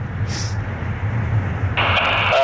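A steady low rumble with no clear source. Near the end a radio receiver's hiss opens up, just before an air-traffic-control transmission.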